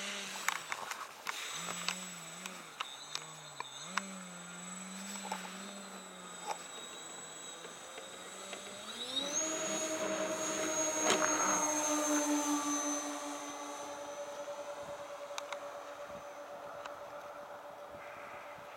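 Motors of a Hangar 9 Twin Otter radio-controlled model plane running low and unsteady at first, then throttling up with a rising whine about nine seconds in for the takeoff run. After that they hold a steady high hum that slowly fades as the plane climbs away.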